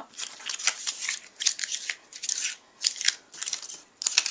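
Die-cut designer paper flowers being crumpled up by hand, in several short bursts of dry paper crackle with brief pauses between them.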